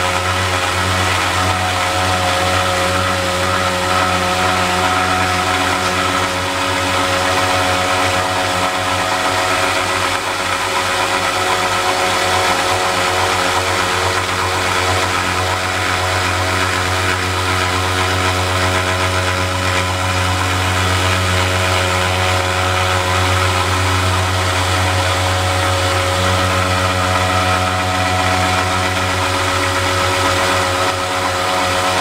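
A 1x30 belt sander running steadily, a constant motor hum under the hiss of the abrasive belt, as a steel knife blade is pressed against the belt's edge over the platen to grind a random rock pattern into the blade.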